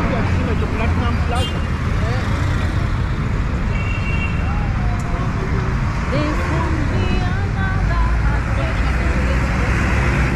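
Busy city-street traffic: the steady rumble of buses, cars and motorbikes passing close by, with people's voices mixed in. A deeper engine rumble builds near the end as a minibus comes close.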